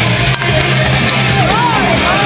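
Loud rock music with electric guitar, played over a bar's sound system and heard in the room, with swooping notes in the second half. A sharp click about a third of a second in.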